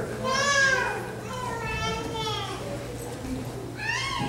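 Young children's high-pitched voices calling out in a large room, two drawn-out cries in the first three seconds and another starting near the end, over a steady low hum.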